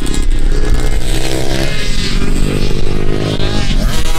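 Small kids' motocross bike engine revving hard as it accelerates round a dirt-track corner: the pitch climbs, drops briefly before two seconds in, then climbs again.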